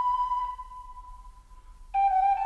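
A flute holds a long high note that fades away over about a second and a half. A new, lower note comes in just before the end and slides up slightly.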